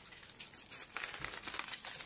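Plastic bubble wrap crinkling and crackling as it is slit open with a box cutter and pulled back. It starts faint and grows louder near the end.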